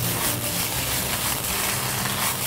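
Treviso searing in a hot stainless sauté pan with a splash of white balsamic: a steady sizzle.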